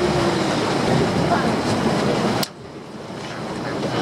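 Wind and sea noise on a small boat's open deck near a seal colony, a steady dense rush with faint voices in it. About two and a half seconds in there is a sharp click and the level drops suddenly, then builds up again.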